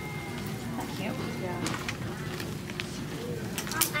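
Shop interior ambience: a steady low hum under faint scattered voices, with a thin high tone that stops about a second and a half in and a sharp click near the end.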